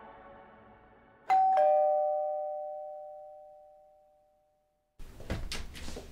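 Two-tone doorbell chime: a higher 'ding' and then a lower 'dong' about a third of a second later, both ringing on and fading away over about three seconds. Soft ambient music fades out just before it.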